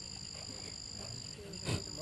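A steady high-pitched chorus of night insects: two unbroken tones. A brief faint sound comes near the end.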